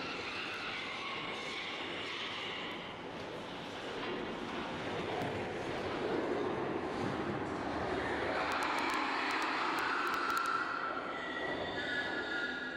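Steady machinery noise from a CO2 stunning elevator, with long, monotone pig screams from pigs further down the shaft. These are most likely a residual brainstem reaction and larynx spasms in unconscious pigs. The screams are clearest at the start and toward the end.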